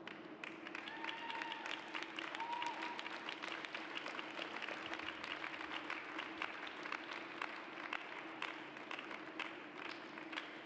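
Scattered applause from a small crowd, with individual claps heard distinctly throughout.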